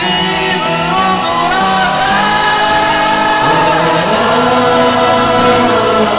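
Music: a song with layered singing voices, in the manner of a choir, over a dense, sustained instrumental backing.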